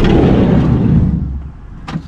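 Low rumbling noise on the camera's microphone as the camera is moved about, fading after about a second and a half, with a sharp click near the end.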